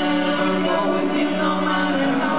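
Live Celtic folk band playing a song, with several long notes held together through the whole stretch.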